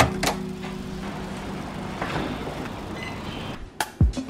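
A sharp click from a digital door lock's handle being worked, a second click right after, then steady background hiss; one more click near the end.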